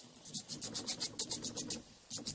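A 180-grit nail file rubbed quickly back and forth over a gel nail, a rapid run of short rasping strokes, several a second. It is smoothing out steps and imperfections in the gel surface. The strokes begin about a third of a second in.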